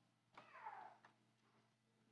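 Near silence in a quiet room, broken about half a second in by one faint, short squeak that falls in pitch.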